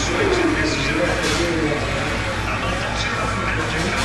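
Pool-hall room noise: indistinct background chatter and music over a steady low hum.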